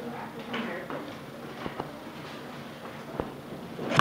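Classroom sounds: faint voices, scattered small knocks and clicks, and a louder sound that swells just before the end.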